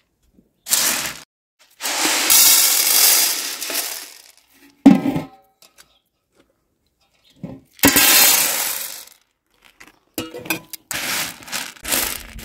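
Dried chickpeas, then pinto beans, poured onto and off a large aluminium tray in rattling pours, with one sharp metallic clang of the tray about five seconds in. Near the end come small clicks and rattles as beans are spread across the metal by hand.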